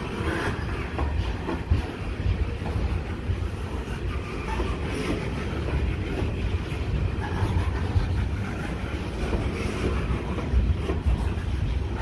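QHAH coal hopper wagons of a freight train rolling past close by: a steady low rumble of steel wheels on rail, with occasional sharp knocks from the wheels and couplings.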